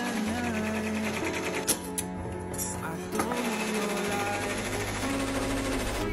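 Brother Entrepreneur Pro X PR1055X ten-needle embroidery machine stitching rapidly, a fast even clatter, heard under a pop song with singing.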